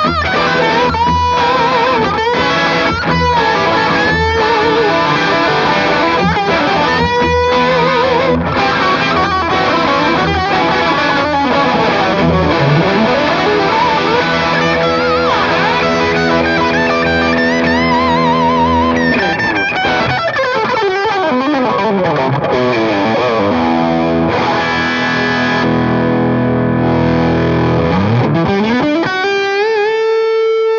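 Gibson Firebird electric guitar played lead through an overdriven amp: single-note lines with string bends and sustained notes. About twenty seconds in there is a long slide down the neck, and near the end a slide up into a held note.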